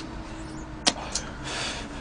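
A single sharp click about a second in, then a short breathy hiss of cigarette smoke being blown out, over a low steady hum.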